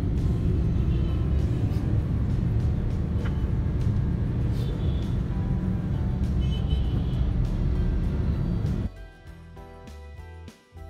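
Low road and engine rumble inside a moving car, with background music over it. About nine seconds in, the rumble cuts off suddenly and only the music goes on, quieter.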